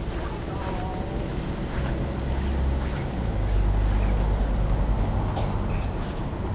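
City street noise heard while walking, with a low rumble that swells about halfway through and holds to the end, typical of passing traffic.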